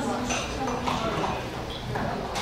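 Indistinct chatter of several people in a room, with a few light knocks or clatters.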